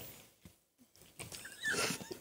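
A pause in studio conversation: about a second of near silence, then faint, brief vocal sounds from someone off-microphone near the end.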